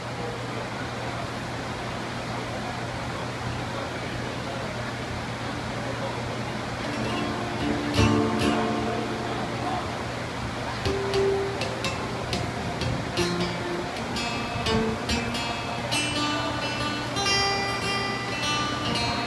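Acoustic guitar starting a song's intro about seven seconds in, single picked notes and chords getting busier toward the end, over a steady low hum and background chatter.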